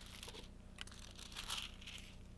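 Faint paper rustling as Bible pages are leafed through, in a few short bursts with the loudest about one and a half seconds in.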